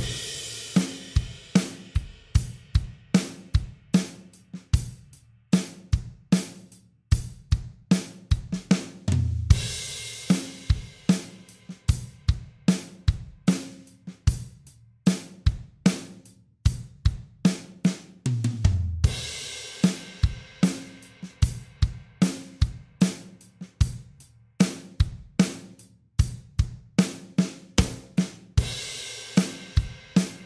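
Acoustic drum kit playing a steady groove in 3/4 at 75 beats per minute, with kick, snare and hi-hat strokes evenly spaced. A crash cymbal rings out at the start and again roughly every nine to ten seconds, each time with a heavy low drum hit.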